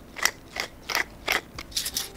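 Hand pepper mill grinding fresh black pepper: a run of short, rhythmic grinding strokes from the twisting mill, about two or three a second.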